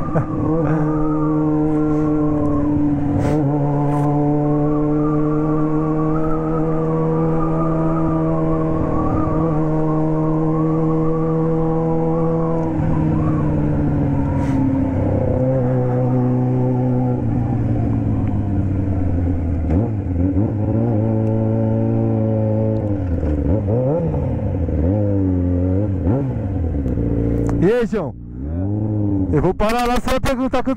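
Motorcycle engine under way, held at steady revs for the first twelve seconds or so, then the pitch steps down; in the last third the revs fall and rise repeatedly as the bike slows, with short throttle blips near the end.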